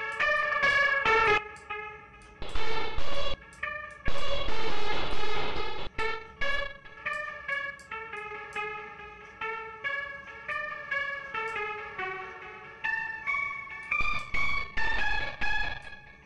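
A keys melody from a trap beat played through the DigiNoiz TrapDrive distortion plugin on type one: a run of pitched notes with a little distortion and grit, not pure.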